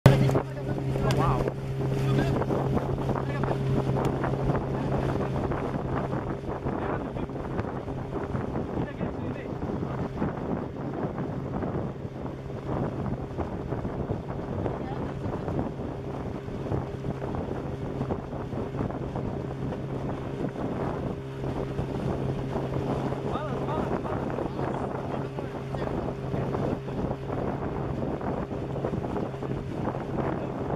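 Small boat's outboard motor running at a steady pitch, with wind buffeting the microphone.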